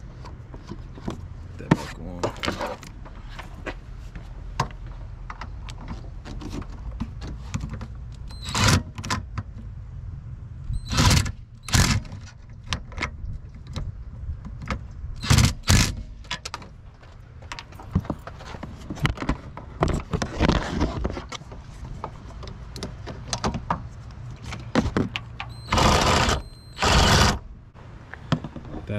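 Hand tools working on the master cylinder's mounting nuts: scattered metal clicks and taps from a socket wrench and extension, with several louder clanks, over a steady low hum.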